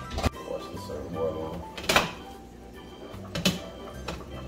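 Background music playing, broken by three sharp clacks about a second and a half apart from kitchen handling: a microwave door and a glass lid on a steaming pot.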